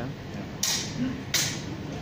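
Two short scuffing noises from a longsword sparring bout, about three quarters of a second apart, with no ringing blade-on-blade clash.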